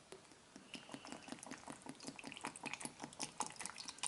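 Liquid poured from a carton into a plastic blender cup packed with frozen fruit. It makes a faint, irregular splashing and pattering that starts about half a second in and gets busier as the pour goes on.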